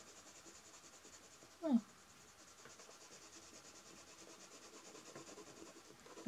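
Castle Art colored pencil (Cobalt Turquoise) scratching on sketchbook paper in many quick, even shading strokes, faint throughout.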